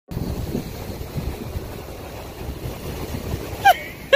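Beach ambience: low, uneven rumble of wind buffeting a phone microphone over breaking surf. A short falling tone sounds near the end.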